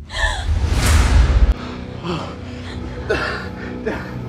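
A young woman gasping sharply, then sobbing in short broken bursts, over dramatic background music. A deep low swell in the score runs through the first second and a half and cuts off suddenly.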